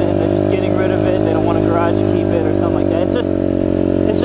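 Chinese dirt bike engine running steadily at a constant cruising speed while being ridden, heard from on the bike.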